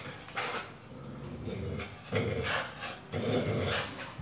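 Pit bull growling in four short, rough bursts while it jumps and tugs at a rubber tyre ring, the loudest bursts in the second half.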